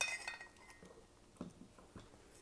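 A single light metallic clink that rings briefly and fades as the aluminium free-float rail is knocked against the metal of the gun while being moved.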